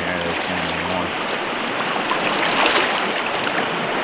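Steady rush of a rocky trout stream, the water running over rocks and riffles.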